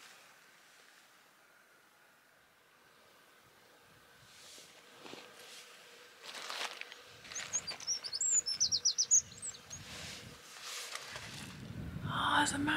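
A small bird calling: a quick run of about eight high chirps lasting about two seconds, a little after halfway through, over a quiet background with a few soft rustles.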